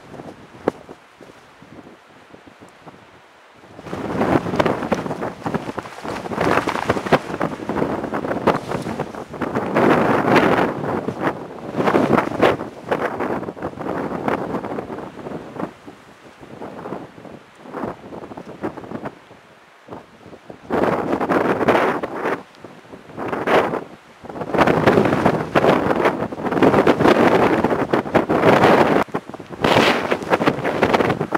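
Wind buffeting the camera's microphone in gusts, a rushing noise that swells and drops every few seconds, with a lull in the first few seconds and another around the middle.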